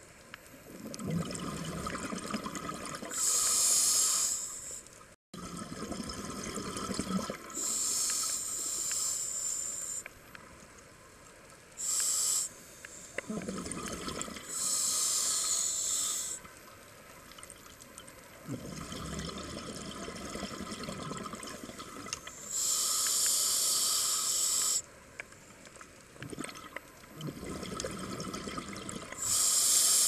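Scuba diver breathing through a regulator underwater: about five breath cycles, each a lower inhale through the regulator followed by a louder hiss of exhaled bubbles venting from the exhaust.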